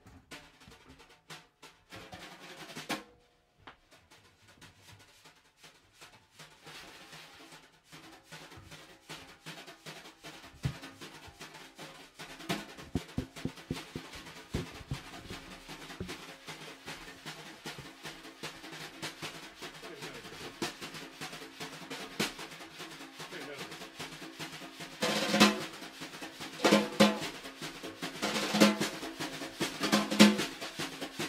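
Snare drums played with wire brushes by more than one drummer, sweeping and tapping a jazz brush pattern. It starts soft and sparse, with a brief lull a few seconds in, then grows steadily busier. Near the end, loud accented hits come about every second and a half.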